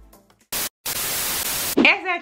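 Background music fades out, then loud static hiss sets in: a short burst, a brief dropout, then about a second more. It is an edited-in TV-static transition effect and cuts off suddenly as a woman's voice begins near the end.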